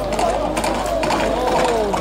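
Horses' hooves clattering rapidly on the asphalt road as mounted riders come up at a run, with voices from the crowd.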